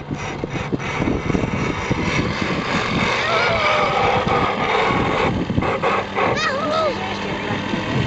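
People's voices over a steady rumbling noise, with a high, wavering voice calling out about six seconds in.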